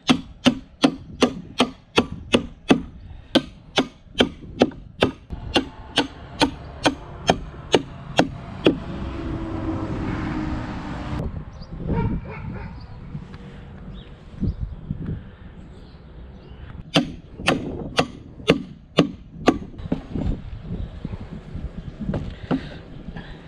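A hammer driving steel spikes down through plastic landscape edging into the ground: a rapid, even run of sharp ringing strikes, about three a second, for the first eight seconds or so. After a stretch of rushing noise and a few scattered knocks, a second short run of about seven strikes comes near the end.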